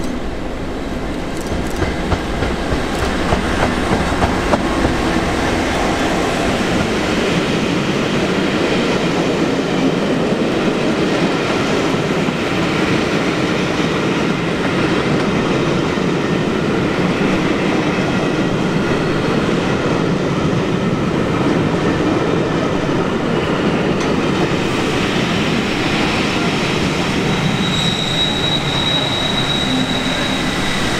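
A Class 66 diesel-electric locomotive, with its EMD two-stroke V12, passes close by at the head of a train of coaches, followed by the steady rumble and clatter of the coaches' wheels on the rails. Sharp clicks over rail joints come in the first few seconds. A high steady whine comes in near the end as the second Class 66 on the rear draws level.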